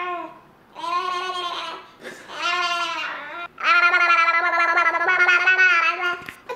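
Infant fussing and crying in a series of drawn-out, high-pitched wails, the last one the longest and loudest. The baby is sick and fussy, which his mother thinks may be teething.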